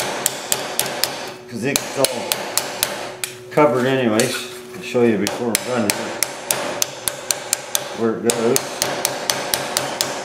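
Pick-ended auto-body hammer striking a steel strip laid over a round steel bar, bending it into a curve: quick metal-on-metal blows with a ringing edge, about three a second. A few brief wavering tones come in between the blows.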